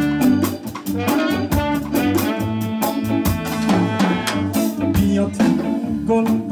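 Live band playing an instrumental passage: a horn section of trumpet, trombone and saxophone over drums and percussion, with electric guitar, at a steady beat.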